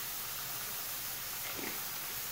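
Rice and onion frying in a pot: a soft, steady sizzle as the rice toasts before the broth is added.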